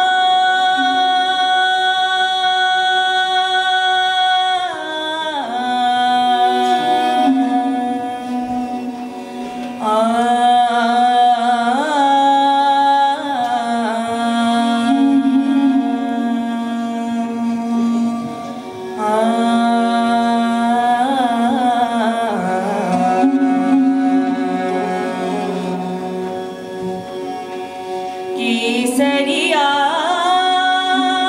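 A woman singing a Rajasthani Maand, holding long notes and decorating them with sliding, ornamented turns between phrases, over a bowed string instrument accompaniment.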